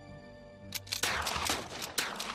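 Rapid, ragged gunfire from several lever-action Henry rifles, many shots a second, starting under a second in, over held orchestral music.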